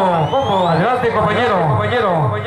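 A man talking into a microphone, his voice carried loud through the sound system.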